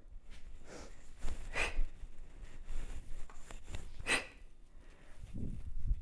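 Short, sharp exhaled breaths of a woman doing continuous single-arm kettlebell swing cleans: three breaths, about a second in, again half a second later, and near four seconds. A dull low rumble of movement builds near the end.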